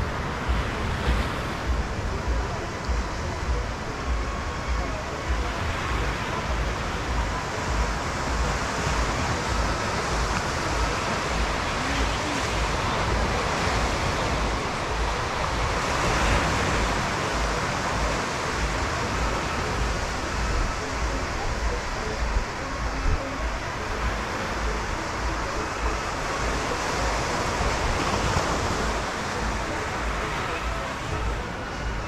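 Surf washing onto a sandy beach, a steady rush of waves that swells about halfway through, with wind buffeting the microphone.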